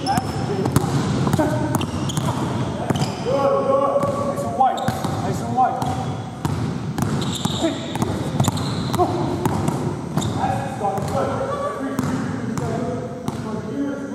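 Basketball dribbled on a hardwood gym floor, with irregular sharp bounces, under people talking.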